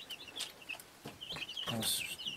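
Faint, quick chirping bird calls repeating in the background, with a few light clicks and a brief rustle.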